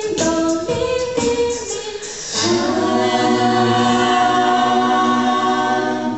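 Mixed-voice a cappella group singing: the parts move for about two seconds, then the group holds a closing chord over a low bass note, which fades away near the end.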